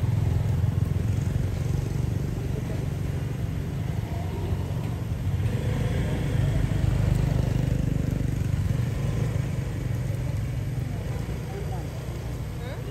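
A steady low engine rumble, like a motor vehicle running, with people's voices faintly in the background.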